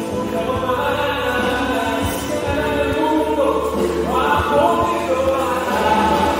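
Live Christian song: a man singing at the microphone with acoustic guitar, over a steady bass, with other voices singing along.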